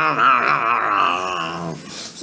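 A man singing unaccompanied, holding one long note with a wavering pitch that trails off near the end.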